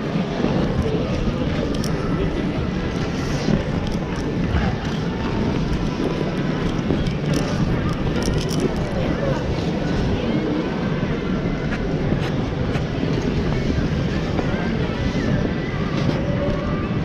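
Steady rumble of air and motion on a neck-mounted GoPro's microphone while ice skating, with skate blades scraping the ice, scattered sharp clicks and the murmur of other skaters' voices.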